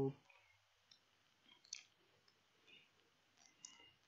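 A few faint computer mouse clicks, spaced out: one about a second in, a sharper one just before the middle, and a pair near the end.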